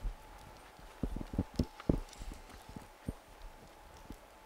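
Irregular soft knocks and taps on a table, picked up by a desk conference microphone, bunched about a second in, over a faint steady tone from the sound system.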